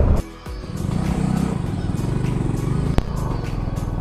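Hero Glamour motorcycle's single-cylinder engine running steadily while riding, with a single sharp click about three seconds in.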